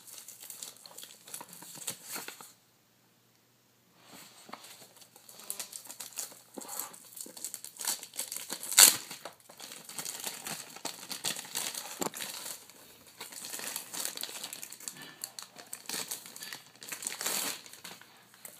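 Clear plastic packaging crinkling and rustling as hands pull and handle it around a boxed external hard drive, in irregular crackles. There is a silent break of about a second and a half near the start and one sharp, louder crackle about nine seconds in.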